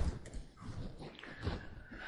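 A few soft, dull thumps or knocks, irregularly spaced, in a room.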